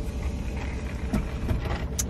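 Steady low rumble inside a car cabin, with a couple of faint clicks about a second in and near the end.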